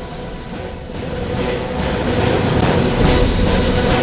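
A steady low rumble with a faint held tone, growing louder over the first two seconds.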